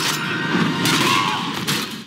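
Battle din from a TV fantasy series' soundtrack: a dense clamour of crashes and impacts, with score music underneath.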